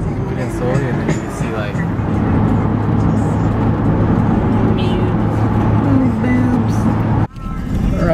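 Steady road and engine noise inside a car cabin at highway speed, with a song and its singing voice over it. The sound breaks off abruptly near the end.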